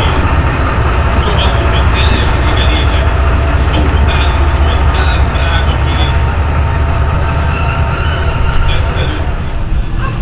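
Diesel engine of a MÁV class 628 (M62) locomotive idling, a steady deep rumble, with people's voices over it.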